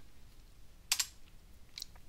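Computer keyboard keystrokes: one sharp key press about a second in, then a couple of lighter clicks near the end.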